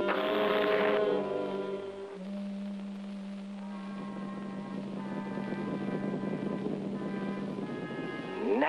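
Orchestral cartoon score with no dialogue. A loud brass-led chord opens it in the first second, then a single low note is held for several seconds under a swelling, buzzing texture. Both cut off shortly before speech resumes.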